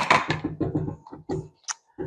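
A spatula scraping and tapping against the metal bowl of a stand mixer, a quick run of irregular scrapes and knocks with a sharp tap at the start and a brief high clink near the end, as butter and sugar are scraped off into the bowl.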